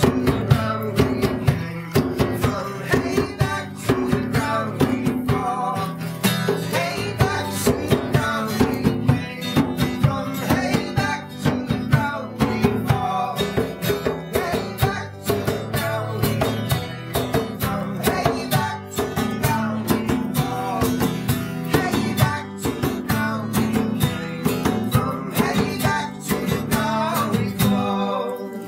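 Live acoustic band music: a strummed acoustic guitar and an acoustic bass guitar over steady, regular hand-drum beats.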